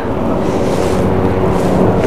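Wind buffeting the phone's microphone: a loud, even rumbling noise, with a faint steady low hum underneath.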